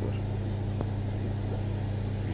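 Aquarium air pump humming steadily, with air bubbling from an airline in the tank, and one faint click just under a second in.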